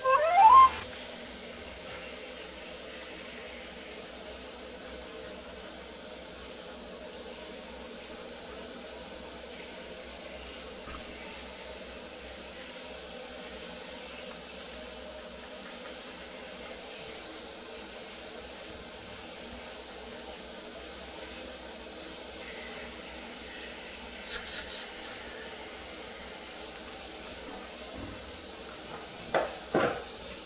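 Poodle giving a short rising whine right at the start, and a weaker one near the end, over a steady low hiss.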